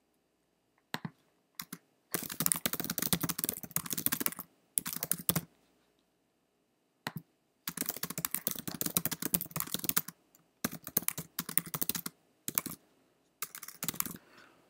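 Typing on a computer keyboard: bursts of quick keystrokes with short pauses between them, the longest runs about two seconds in and again from about eight to twelve seconds.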